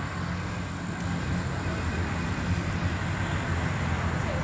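Steady outdoor background noise: a low rumble with a hiss over it, no distinct events.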